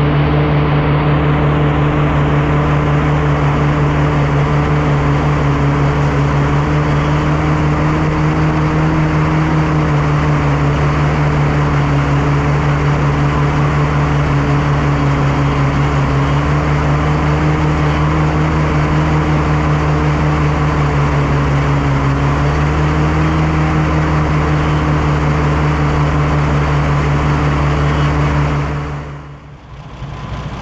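Oliver 880 tractor's six-cylinder engine running steadily under load while pulling a grain drill, heard close up, its pitch holding nearly even with small dips. It fades out near the end.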